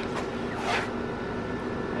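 Steady low mechanical hum of room ventilation, with one brief hiss a little under a second in.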